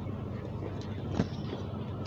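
Steady low, engine-like rumble, with a couple of brief knocks, the louder a little over a second in.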